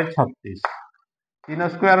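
A man speaking in short phrases, broken by a single sharp tap about two-thirds of a second in: chalk striking a chalkboard as he writes.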